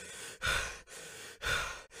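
A person breathing heavily in a steady repeating rhythm, about one breath cycle a second, each a quieter breath followed by a louder, breathy sigh.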